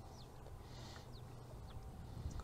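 Quiet background: a low steady hum with a few faint, short falling chirps of birds.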